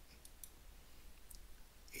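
A few faint computer mouse clicks as a menu item is selected, over a low steady hum.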